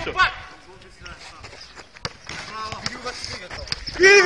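A football being kicked and bouncing on an asphalt court: a few short, sharp thuds, the sharpest about two seconds in. Faint shouting from players can be heard in the distance.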